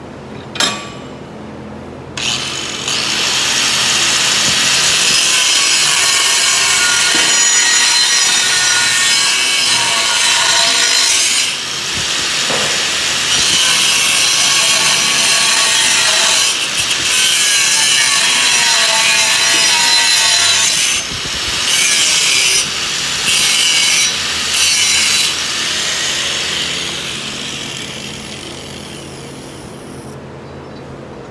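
Angle grinder with a cut-off wheel slicing partway into a 3 mm steel plate to make it easier to bend: it starts about two seconds in, cuts steadily with a few brief lifts off the metal, then spins down over the last few seconds. A single knock on metal comes just before it starts.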